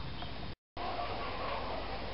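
Steady outdoor background noise, with a complete dropout lasting a fraction of a second about half a second in, where the recording is cut.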